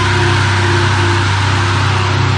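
Heavy metal song holding a low, distorted chord that rings on steadily with no vocals.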